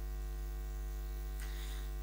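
Steady electrical mains hum with a ladder of overtones, unchanging, over a faint hiss.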